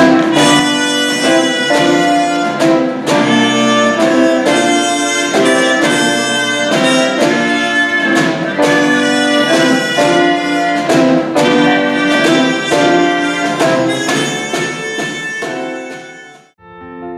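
Small live ensemble of trumpet, violin, drum kit and piano playing a tune with a steady beat, fading out near the end.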